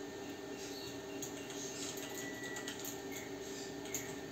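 Faint steady hum with a few soft ticks of metal tweezers and thread against a sewing machine's thread tension discs and guides as it is being threaded.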